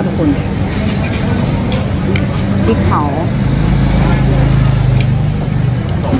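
Road traffic with a motor vehicle's engine running nearby: a steady low rumble that grows louder from about three and a half seconds in until near the end.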